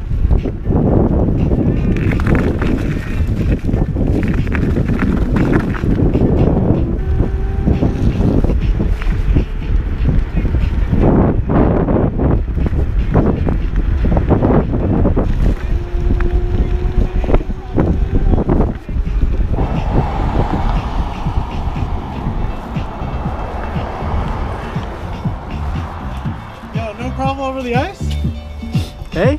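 Wind buffeting the microphone and tyre rumble from an electric scooter riding a rough trail, with frequent jolts and a faint steady whine in the middle.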